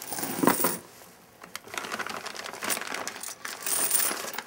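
Crinkling and rustling with small sharp clicks: a loud cluster in the first second, a short lull, then steady rustling through the rest.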